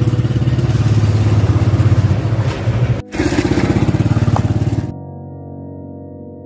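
Motorcycle engine running with a rapid, even firing beat, cut off briefly about three seconds in. About five seconds in it gives way to soft, sustained keyboard music.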